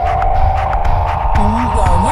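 Experimental electronic music built from sampled old-school electro loops: a heavy bass pulse under steady droning tones and a regular beat. About two-thirds of the way in, gliding, warbling synth tones come in.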